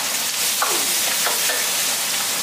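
Chopped green beans sizzling steadily in a hot black wok while a steel ladle stirs them, scraping across the wok a few times.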